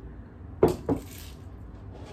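Two sharp crunches about a third of a second apart as a hard corn taco shell is bitten into, with a short crackle of chewing after the second.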